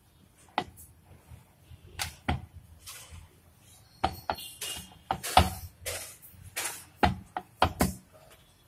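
Wooden rolling pin rolling out dough on a wooden rolling board: an irregular series of knocks, taps and short rolling scrapes as the pin meets and runs across the board.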